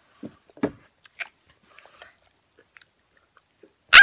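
A child chewing mini Oreo cookies, with a few short, crisp crunches in the first two seconds and then only faint mouth sounds.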